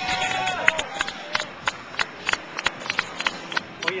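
Spectators clapping for passing cyclists, sharp claps in a quick, uneven rhythm of about three a second, with a shouted cheer at the start and a call of "oye" at the very end.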